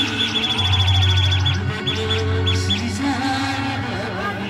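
A Marathi village band plays a song loud, with a strong low bass and drums. In the first half a rapid run of short, high chirping notes, about eight a second, thins out into a few spaced ones.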